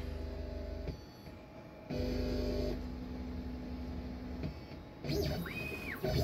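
Onefinity CNC's stepper motors whining as the machine moves slowly through its automatic touch-plate probing cycle: a steady tone that stops about a second in, resumes about two seconds in and runs to about four and a half seconds. Near the end a short whine rises in pitch and holds as an axis moves faster.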